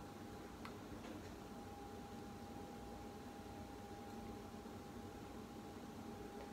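Quiet bathroom room tone with a faint steady hum, and a few faint ticks in the first second or so as the chrome swivel arm of a wall-mounted magnifying mirror is handled.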